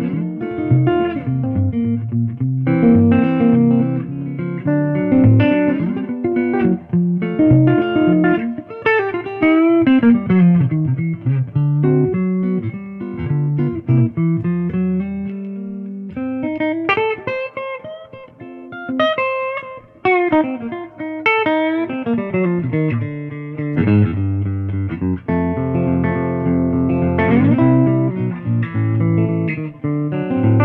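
Supro Hampton electric guitar with gold foil mini-humbucker pickups, played through an amplifier in a country-jazz style: picked single-note lines and chords with sliding notes and quick runs up and down the neck. It is played in turn on the neck, middle and bridge pickups.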